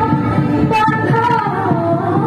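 A woman singing a melody into a handheld microphone over backing music with a steady beat.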